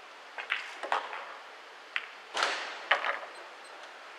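Pool balls clicking: the sharp ball-on-ball and cue-tip clicks of play on a 9-ball table, several in quick succession, with a slightly longer rattle about halfway through.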